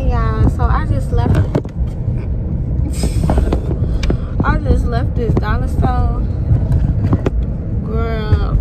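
Steady low rumble of a car cabin while driving, with a woman's voice talking over it.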